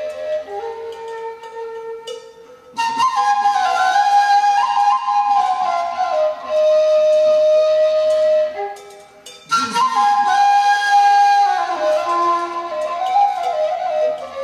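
Furulya, a Hungarian wooden folk flute, playing a melody. It starts softly in a low register, then turns louder and higher from about three seconds in, with a short breath pause about nine seconds in.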